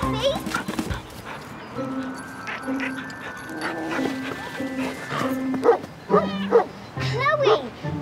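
A cartoon pet triceratops making short, puppy-like yapping barks, a run of calls in the last couple of seconds, over light background music.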